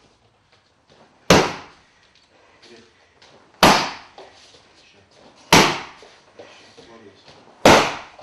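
Four loud slaps of roundhouse middle kicks (mawashi chudan geri) landing on a padded kick shield, about two seconds apart, each ringing briefly in the room.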